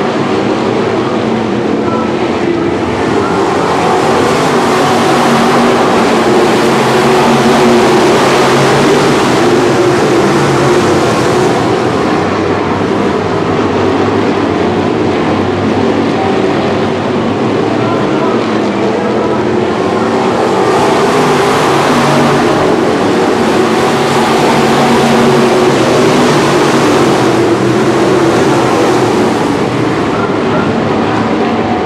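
A field of IMCA Northern SportMod dirt-track race cars with V8 engines running hard around the oval. The engines blend into one loud, steady drone that swells twice as the pack comes past.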